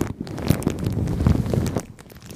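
Shiny plastic sheet rubbed and pressed against a microphone grille: close, muffled rustling with a deep rumble and a few sharp crackles. It drops away sharply near the end as the plastic comes off the microphone.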